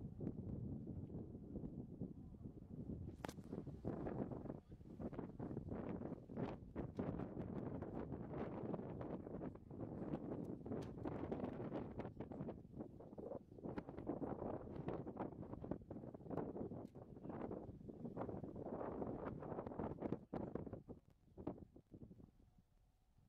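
Wind buffeting the camera's microphone in gusts, a rough rumbling noise that swells and eases, with crackles through it.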